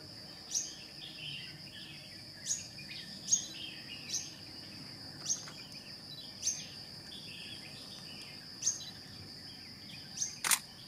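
Outdoor natural ambience: a steady high-pitched insect drone, with short sharp bird chirps breaking in every one to two seconds, about seven in all.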